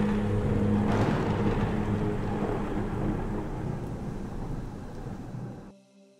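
Sound effects of rain and thunder over a sustained low music drone. They swell about a second in, then fade gradually and cut off just before the end.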